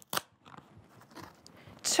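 An award envelope being opened and the card inside handled. There is one sharp snap just after the start, then faint crinkling of paper and card.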